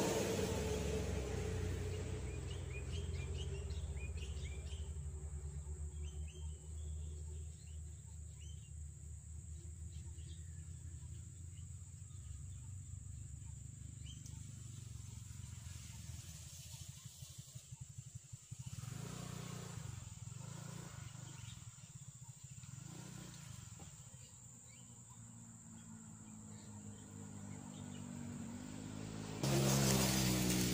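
Quiet pond-side outdoor ambience: a steady low hum runs underneath, and faint short bird chirps come and go, mostly in the first half.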